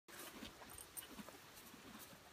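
Pug sniffing in the grass: faint, short breaths through its nose, several a second, with a couple of soft clicks.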